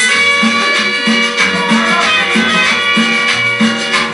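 Latin dance music playing loud, with a steady, even bass beat under held chords.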